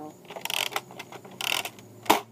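Nerf Fortnite BASR-L bolt-action blaster's plastic bolt being worked: two short sliding strokes about a second apart, the bolt drawn back and pushed forward.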